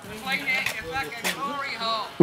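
Quiet talk from people at a distance, the words not made out, with no other distinct sound.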